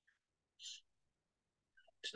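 Near silence: room tone, with one brief, faint hiss about half a second in.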